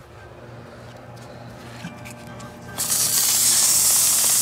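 A Fedders air-conditioner fan motor running with a low steady hum. About three seconds in, 180-grit sandpaper is pressed against its spinning shaft, and a loud steady sanding hiss starts as the surface rust is polished off.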